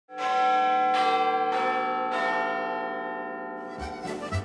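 Bells struck four times in the first two seconds or so, each strike ringing on and slowly fading into the next. Just before the end a dance band with a steady beat starts up.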